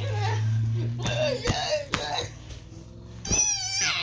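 A child making wordless fight noises for plush toys: short cries, then a high, wavering squeal near the end. A few thumps of the toys hitting the bed.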